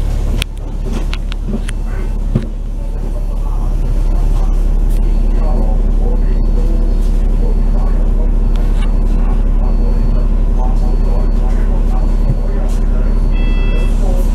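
Double-decker bus's diesel engine idling while the bus stands at a stop, a steady low hum heard from the upper deck, with a few clicks in the first couple of seconds. A faint high beep repeats about once a second.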